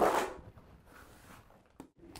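One short scrape of a plastering tool across wet sand-and-cement render, fading within about half a second, then faint room sound with a small click near the end.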